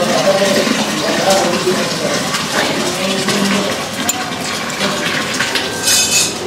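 Thick sambar being poured from a metal cooking pot: a steady gushing, splashing pour of liquid, with voices in the background and a metal clink at the very end.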